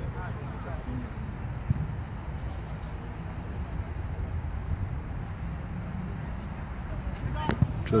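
Outdoor football-pitch ambience: a steady low rumble of wind on the microphone under faint, distant shouts of players, with a single sharp thump about two seconds in.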